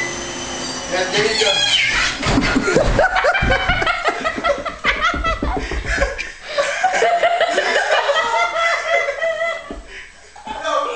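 Loud, high-pitched, squealing laughter from onlookers as a man falls off the back of a running treadmill, with low thumps of his body hitting the belt and the wall between about two and six seconds in.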